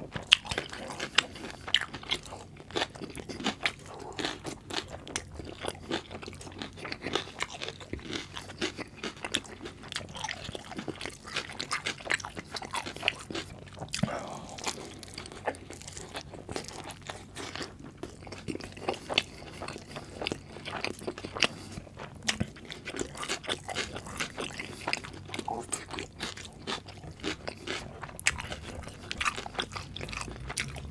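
Close-miked eating of a double bacon cheeseburger: bites and continuous chewing, full of small crunches and wet mouth clicks throughout.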